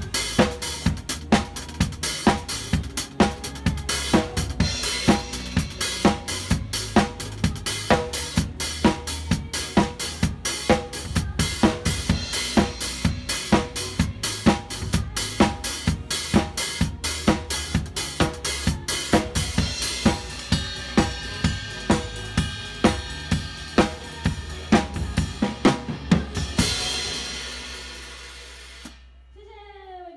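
Drum kit played at a quick, steady pulse of tom, snare and bass drum strokes with cymbals. About four seconds before the end the playing stops on a final cymbal crash that rings and fades away.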